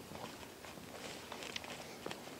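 Faint footsteps of dance shoes, including a woman's heels, on a wooden studio floor: a few soft taps and scuffs as a couple steps through the salsa basic.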